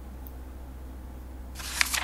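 A digital flipbook's page-turn sound effect: a short papery swish with a crisp snap near its peak, starting about a second and a half in. A steady low hum lies underneath.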